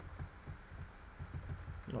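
Faint, dull low thuds of typing on a computer keyboard, a few keystrokes at an uneven pace.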